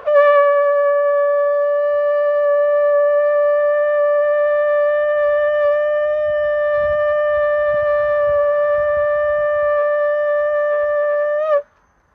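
Shofar blown in one long, steady note lasting about eleven and a half seconds, which lifts slightly in pitch just before it cuts off.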